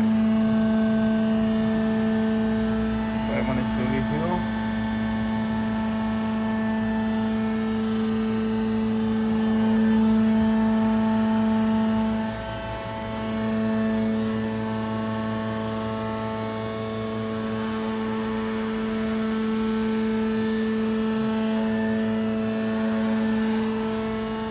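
Gearbox-driven C/Z purlin roll forming machine running, a steady pitched motor drone that dips briefly about halfway through.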